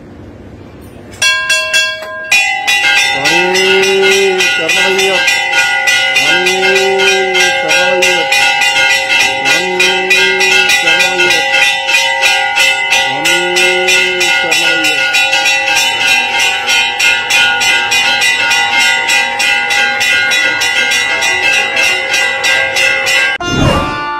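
Temple bells rung rapidly and continuously, starting about a second in, with a conch shell blown four times in long calls that rise and fall in pitch, about three seconds apart.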